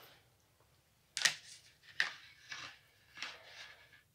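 Handling noise from a small microphone and its cable: about five short clicks and rustles, the first about a second in.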